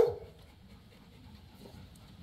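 A dog's short bark right at the start, then a faint, steady yard background with no further distinct sounds.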